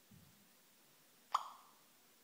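A single short pop-like blip with a brief ringing tail, about a second and a half in, from the iPhone 4's speaker: the voice-command app's tone as it finishes listening to the spoken question. Otherwise near quiet.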